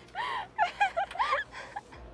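A person laughing in a quick run of short pitched bursts that stop about halfway through.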